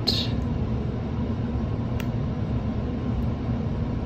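Steady low rumbling background noise with a faint steady hum, and a single sharp click about halfway through.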